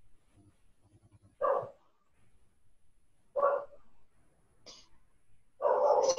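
A dog barking twice, two short barks about two seconds apart.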